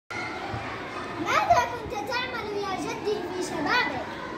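Children's voices: girls talking, with the bright, high pitch of young speakers.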